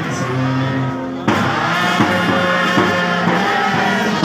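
Live band music with trumpets playing held notes over a dense backing, with an abrupt jump in loudness a little over a second in.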